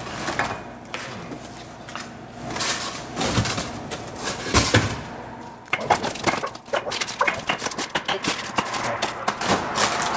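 Frozen packs of hamburger knocking and rustling as they are lifted out of a chest freezer and packed into a styrofoam-lined cardboard box: a string of clunks and scrapes, busiest in the second half.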